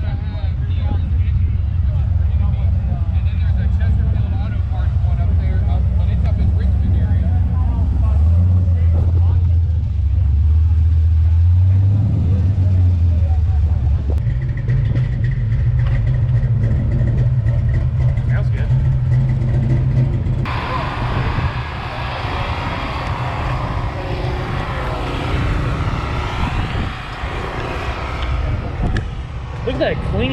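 A car engine running close by: a low, steady rumble that shifts pitch a few times in the first half, then fades under a broad hiss of outdoor noise that comes in suddenly about two-thirds of the way through.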